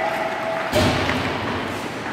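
A sudden heavy thud about three quarters of a second in, echoing through a large ice rink, over the ongoing noise of hockey play: skates on ice, sticks and the puck.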